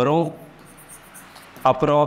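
Marker pen faintly rubbing across a writing board as a word is written, heard in a short gap between a man's words.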